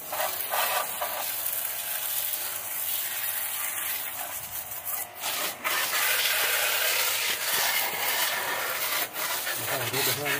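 Water jet from a 12-volt Proffix portable pressure washer's spray gun, a steady hiss and spatter as it strikes a motorcycle and wet concrete, a little louder from about halfway through.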